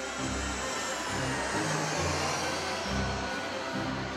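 Jet airliner's engines during a landing approach: a steady rushing noise, with background music and its low bass notes underneath.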